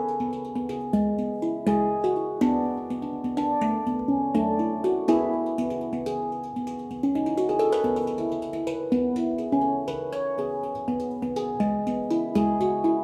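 Yishama Pantam handpans played with the hands: a quick, rhythmic run of struck steel notes that ring on and overlap into a melody, with light percussive taps between them.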